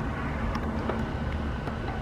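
Steady low machinery hum with a faint even hiss, without any knocks or changes.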